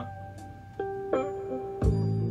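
1967 Gibson ES-335 semi-hollow electric guitar through a Fender Pro Reverb amp, picking out a few separate notes of a D minor chord as an arpeggio. The loudest, lower note comes near the end.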